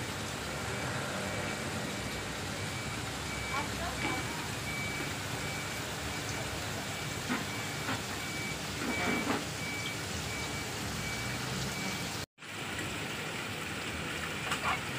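Steady hiss of aquarium aeration and bubbling water in fish-shop tanks, with a high electronic beep repeating at an even pace through most of it and faint voices in the background. The sound cuts out for a moment near the end.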